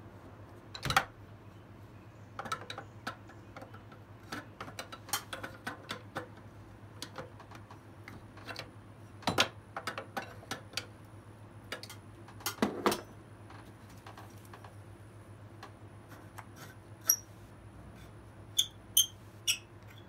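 Steel open-end wrench clicking and clanking against the EGR pipe nut and nearby engine metal as it is taken off, flipped and refitted again and again to break the nut loose in a tight spot. The clicks and knocks are irregular, and a few short metallic pings come near the end.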